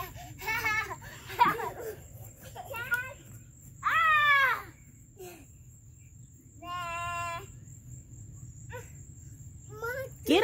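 Young children shouting and squealing as they run and play on grass: a few short high-pitched cries, a loud one about four seconds in and a long, level-pitched call about seven seconds in.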